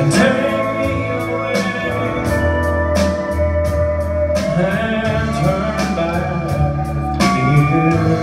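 Live country band playing a slow song: pedal steel guitar, electric and acoustic guitars, bass and drums, with a voice singing.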